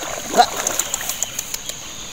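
Water splashing and swishing around a man wading hip-deep through a shallow river, with a steady rush of moving water behind it.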